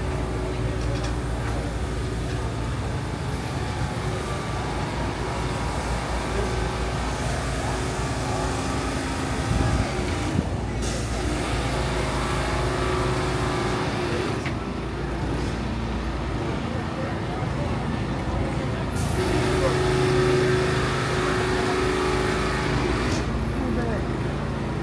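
City street traffic: vehicle engines idling and running with a steady low hum that swells for a few seconds about two-thirds of the way through, mixed with pedestrians' voices. A brief loud burst comes about ten seconds in.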